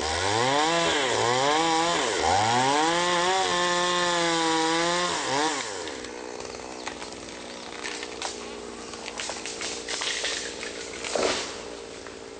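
Chainsaw revved up and down in several quick blips, then held at high revs for about three seconds before dropping off about five and a half seconds in. After that a quieter, steadier sound with scattered cracks and knocks, the loudest near the end.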